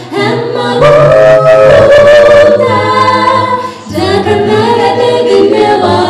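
Male a cappella vocal group singing in harmony into microphones, with no instruments, pausing briefly between phrases about four seconds in.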